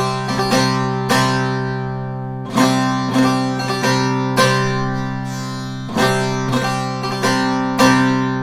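Short-neck bağlama (kısa sap bağlama) played with a plectrum in a zeybek-style stroke pattern. Repeated la notes are broken by quick pairs of fast mi strokes, and the open strings ring under them. The short phrase comes round again about every one and a half to two seconds.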